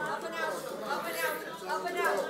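Speech only: several voices talking and murmuring over one another, with no words clearly picked out.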